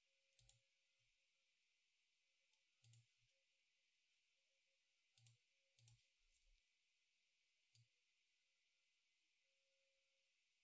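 Near silence broken by five faint computer mouse clicks, spaced one to two seconds apart, made while drawing on the screen.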